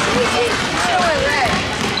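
Basketball bouncing on a hardwood gym floor during play, under an overlapping hubbub of indistinct voices from the spectators and players filling the hall.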